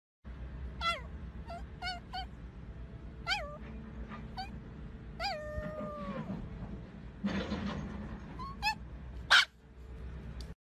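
Small dog giving a series of short high-pitched whines and yelps. Two of them are drawn out and fall in pitch, and a louder, sharper yelp comes near the end.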